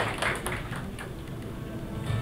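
Faint voices in a large room, fading after about the first second.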